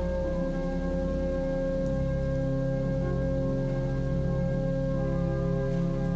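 Church organ playing slow, held chords that change a few times.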